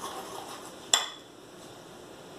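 Wire whisk clinking once against a glass bowl of beaten egg yolks and sugar, about a second in, with a short ring.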